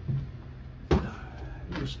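A single sharp knock about a second in, with lighter handling bumps, as a carbon filter canister is set down into an OSB wooden box.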